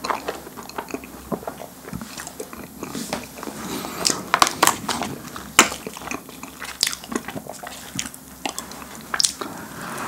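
Close-miked chewing and biting of a fish-shaped wafer filled with ice cream, the crisp shell giving sharp crunches that come thickest about four to six seconds in.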